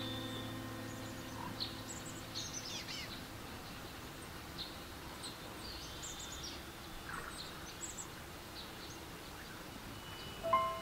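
Small birds chirping and twittering at scattered moments over a faint steady hiss of outdoor ambience, with one quick falling call about two to three seconds in. A soft piano chord dies away at the start.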